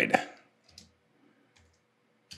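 Computer keyboard keys clicking a few separate times, faint, as code is typed.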